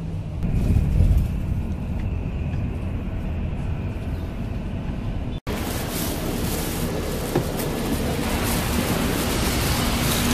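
Coach bus engine and road noise droning steadily inside the passenger cabin. After a sudden cut about halfway, a brighter, steady hiss takes over as the bus is left on a wet, rainy road.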